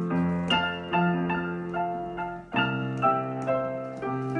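Solo piano piece played on a digital piano: a slow melody over sustained bass notes and chords, with a new chord struck about two and a half seconds in.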